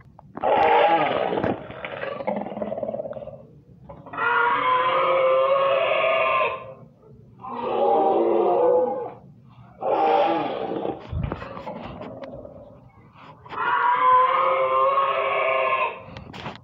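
A person's voice making long, drawn-out monster roars and growls, about five of them, each lasting two to three seconds with short breaks between.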